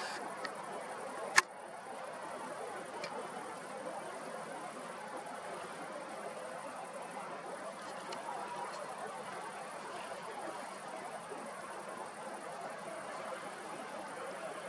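Faint, steady background noise with one sharp click about a second and a half in.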